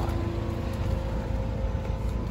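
Mini Cooper Countryman's engine idling: a steady low rumble with a faint, even hum over it.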